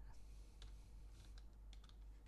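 Faint clicks of computer keyboard keys typing a short command, a few keystrokes, closer together toward the end.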